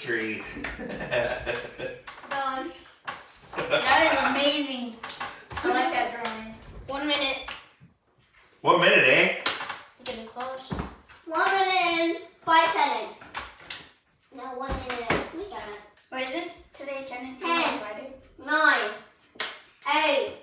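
Children's voices talking and calling out over one another in a small room.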